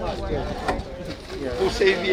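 Several people talking at once, their words indistinct.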